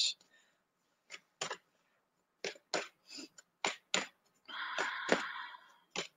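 A deck of oracle cards being handled and shuffled: scattered light clicks and taps of the cards, then a short rushing shuffle about four and a half seconds in that lasts just over a second.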